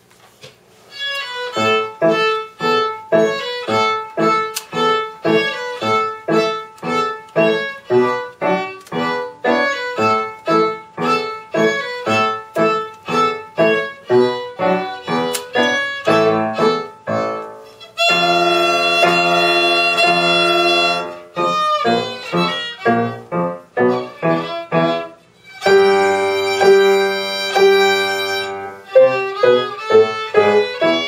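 Solo violin with piano accompaniment playing a classical student piece, starting about a second in: mostly short, separated notes in a steady rhythm, broken by two stretches of long held notes.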